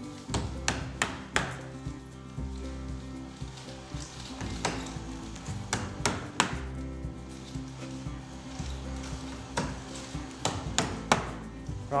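Claw hammer driving felt tacks through roofing felt into the timber of a shed roof: a series of sharp taps in short runs, with a quick burst of about four near the start and another near the end, over steady background music.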